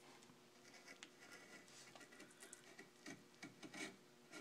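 Hand carving gouge slicing chips from a wood blank: a run of short, faint scraping cuts, with a few louder strokes near the end.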